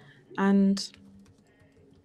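A brief spoken syllable, then faint clicking of a computer keyboard being typed on.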